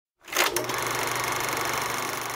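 Steady hiss with a faint hum and a fast, even buzz: playback noise from an old videotaped TV advert, starting with a couple of clicks about half a second in.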